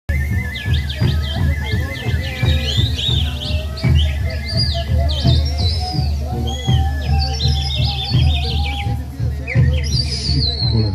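Andean festival music: a steady, wavering flute-like tone with many quick, bird-like chirping whistles gliding up and down above it, over a heavy low rumble.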